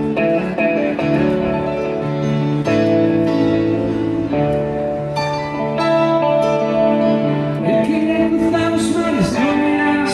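Live electric guitar and stage-piano keyboard playing 80s-style Spanish pop-rock through a small PA, with held chords changing every second or two and a few notes bending in pitch near the end.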